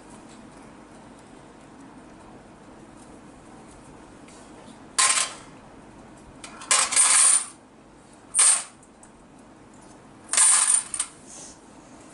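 Coins dropped by hand into a small kitchen vessel hanging from a string, clinking in four separate bursts a second or two apart. Each drop adds weight to the vessel.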